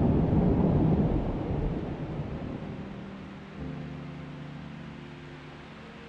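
A deep, rumbling noise that fades away over the first three seconds, then a soft held musical chord comes in about three and a half seconds in.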